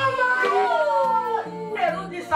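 A long, high-pitched drawn-out cry that slides down in pitch for about a second and a half, over background music with a stepping bass line.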